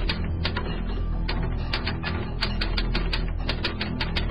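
Typewriter keystrokes clacking irregularly, about four a second, in time with text typed out on screen, over low, sustained background music.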